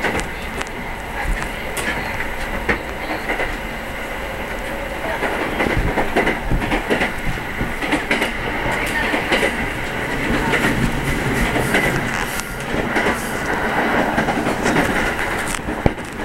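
Moving train heard from inside the carriage: steady running noise with irregular clicks and clacks from the wheels on the track.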